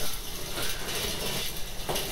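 Water pouring steadily from the fill pipe into the wash tank of an AC-44 conveyor dish machine as the tank fills, an even rushing splash.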